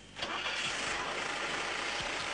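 Multiple rocket launcher firing a salvo: a steady, loud rushing roar of rocket motors that sets in suddenly about a quarter second in.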